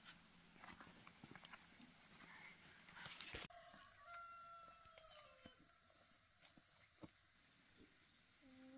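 A rooster crowing faintly, one long call falling slightly in pitch about four seconds in, after a few soft knocks and rustles.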